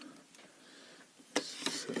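A single sharp click about two-thirds of the way through, followed by a short scrape, as a metal padlock is shifted by hand on a rubber mat.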